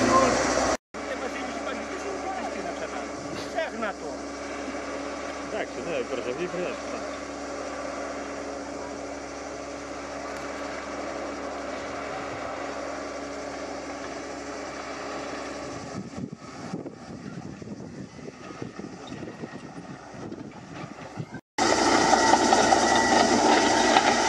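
An engine running steadily with a constant hum, fading and growing more uneven about two-thirds of the way through, with two sudden dropouts where the recording cuts.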